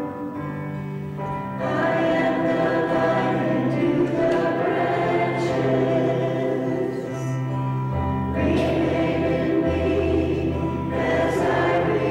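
A hymn sung by voices to instrumental accompaniment: slow, sustained chords over held bass notes that change every few seconds.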